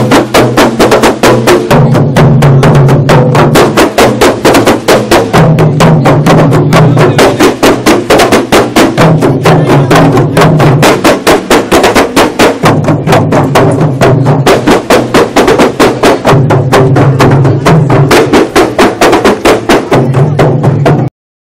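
Kompang ensemble: several hand-beaten Malay frame drums played together in a fast, steady interlocking rhythm of sharp slaps, with a deeper layer that comes and goes every few seconds.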